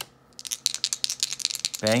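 Small plastic game dice shaken in the hand, a fast rattle of clicks lasting about a second and a half, after a single tap at the start as a player card is set down on the table.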